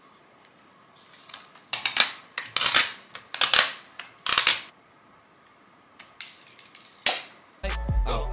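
A cleaning cloth rubbed across a phone's glass screen in about five short strokes, then two more after a pause. A hip-hop track with heavy bass comes in near the end.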